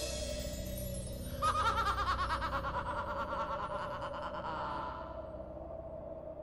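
Soft soundtrack music with a held note, joined about a second and a half in by a high warbling, trilling tone that fades away near the end.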